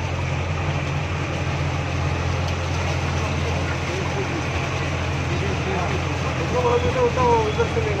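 Bus engine running with a steady low drone, heard from inside the bus as it moves along.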